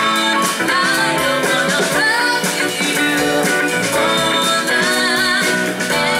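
Live funk band music: a woman singing over electric guitar, bass guitar and drums.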